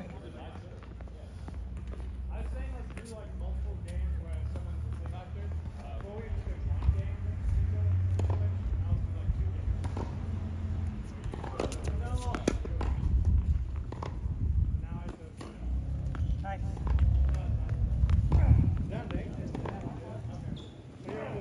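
Wind buffeting the microphone in a fluctuating low rumble, the loudest sound, with a few sharp knocks of tennis balls being struck and bouncing on a hard court.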